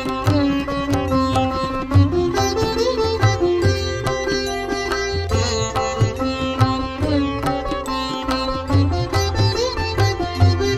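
Instrumental Indian devotional music: a plucked string instrument plays a melody over a steady drone, with low drum beats throughout.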